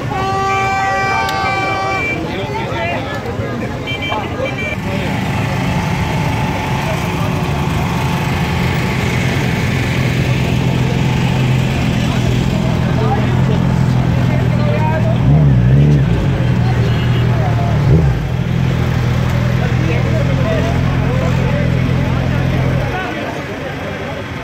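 A vehicle horn held for about two seconds at the start, then a steady low motorcycle engine hum from about five seconds in under crowd voices, cutting off about a second before the end.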